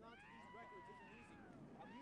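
A faint, drawn-out, high-pitched cry that rises and then falls in pitch over about a second and a half, like a distant voice.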